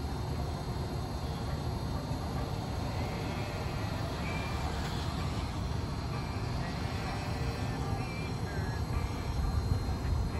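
Steady low hum of an Electrify America DC fast charger's cooling system: the fans and the coolant pump for its liquid-cooled charging cable are running, as they should when the charger is delivering high power. A few faint, short, high chirps sound over it about three seconds in and again near the end.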